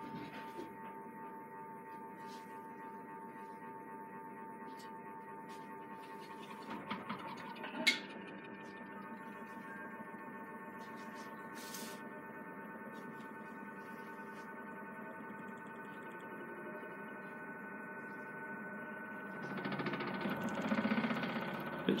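Creda Debonair spin dryer's motor and drum running up to speed, a steady whine of several held tones, typical of its long spin-up. Near the end a louder, rough rattle comes in as the machine gets shaky.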